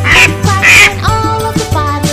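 A cartoon duck quacks twice, about half a second apart, over children's song music.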